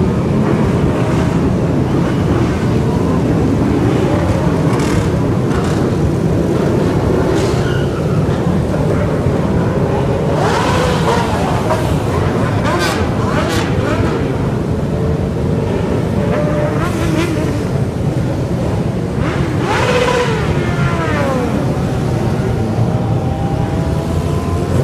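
A large group of motorcycles riding past, their engines running together in a continuous mass of engine noise. Several bikes rev up and down as they go by, heard as rising and falling pitch sweeps about ten seconds in and again about twenty seconds in.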